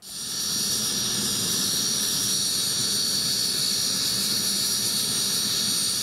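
Turbine engines of a Mi-2 crop-spraying helicopter running, a steady high whine over a constant engine rush.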